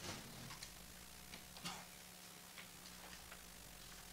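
A quiet room with faint, scattered clicks and paper rustles as band members handle sheet music and instruments, over a steady low hum. The most distinct click comes a little before halfway.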